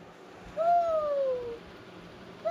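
A young child's single drawn-out vocal call, falling steadily in pitch over about a second.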